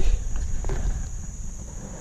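Low rumble of handling and wind noise on a body-worn camera microphone, fading as it goes, with a couple of faint knocks early on as a dug-up screw-top container is opened.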